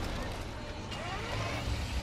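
Film soundtrack ambience of a city street: a steady low traffic rumble and hiss, played back in the room.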